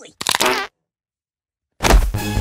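A short, raspy fart sound effect lasting about half a second, followed by silence; music with a heavy bass comes in near the end.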